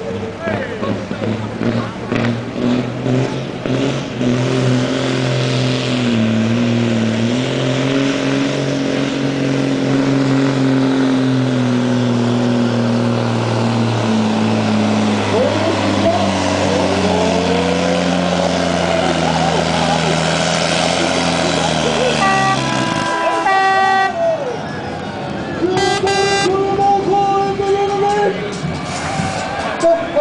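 Diesel engine of a DAF pulling truck running flat out under heavy load while dragging a weight-transfer sled, its pitch slowly sagging as the sled bogs it down before it cuts off abruptly near the end. Horn blasts follow, two spells of steady tones.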